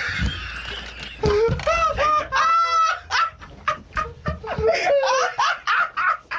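Hearty laughter from the two show hosts, in rapid repeated bursts, some of them high-pitched.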